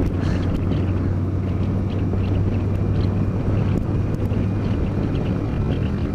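Yamaha FJR1300 motorcycle's inline-four engine running steadily at cruising speed, a constant low hum, with wind rushing over the bike-mounted microphone.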